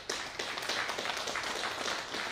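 Audience applause: many people clapping together in a steady round.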